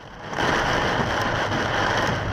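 Heavy downpour pelting a moving car's windscreen and roof in a storm, heard from inside the car: a dense, steady rushing noise that sets in about a third of a second in.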